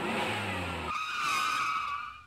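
Vehicle sound effect: an engine running with a low hum, which drops away about a second in. A high, slightly wavering squeal then holds for about a second before cutting off.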